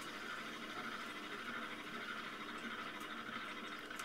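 Potter's wheel spinning steadily while a loop trimming tool shaves leather-hard clay from the foot of a small teapot body.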